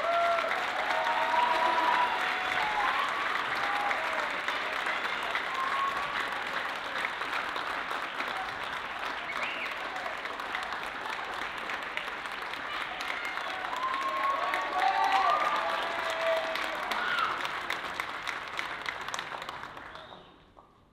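Concert audience applauding, with shouted cheers near the start and again about three-quarters of the way through; the clapping dies away at the end.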